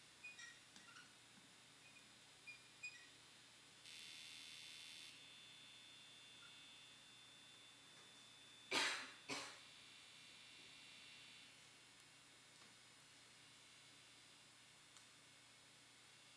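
Sparse, quiet live electronic sounds from a handheld device held to a microphone: small high blips in the first few seconds, a hiss about four seconds in that leaves faint high tones ringing for several seconds, and two short rough bursts a little past the middle, over a faint low steady hum.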